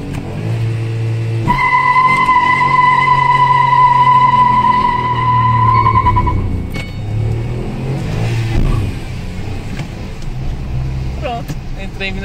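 Ford Ka 1.0 three-cylinder engine and road noise at highway speed, heard from inside the cabin. About a second and a half in, a steady high-pitched tone starts, louder than the engine, and holds for about five seconds before stopping.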